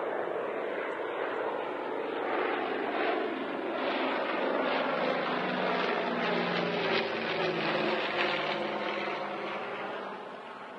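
Propeller-driven firefighting aircraft flying past over a wildfire, its engine drone swelling to a peak midway and then easing off.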